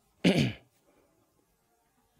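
A man clearing his throat once, briefly, about a quarter of a second in.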